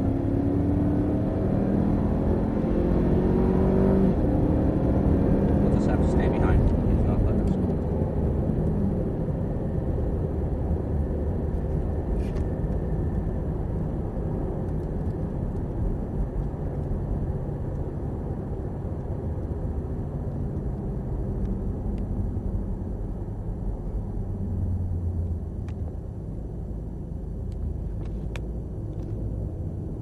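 Cadillac CTS-V's V8 engine heard from inside the cabin on track, climbing in pitch under full throttle for the first four seconds, then dropping as it shifts and running on as a steady drone. It gradually gets quieter in the second half as the car slows for a corner.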